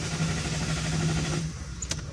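Car starter motor cranking the engine for about a second and a half to restart it after a stall, then stopping, with a sharp click near the end.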